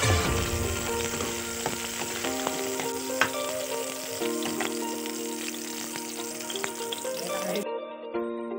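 Sliced onions sizzling in hot oil in a kadhai, stirred with a steel ladle that clicks and scrapes against the pan now and then. The sizzling cuts off suddenly near the end.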